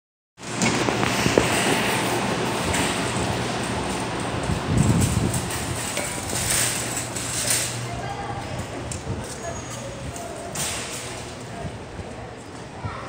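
Store ambience picked up by a moving handheld phone: rustling handling noise and occasional knocks over indistinct background voices and a steady low hum.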